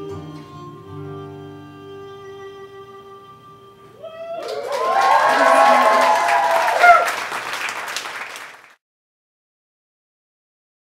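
The last chord of an acoustic trio of guitar, cello and violin rings out and fades. About four seconds in, the audience breaks into loud applause and cheering, which cuts off suddenly near the end.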